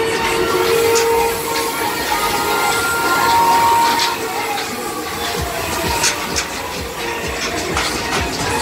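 Loud fairground music played over a spinning Huss Break Dance ride, with held synth-like notes. The ride's running noise and scattered clicks and knocks come through underneath.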